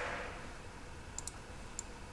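A few faint, sharp computer mouse clicks over quiet room tone, two close together about a second in and one more near the end.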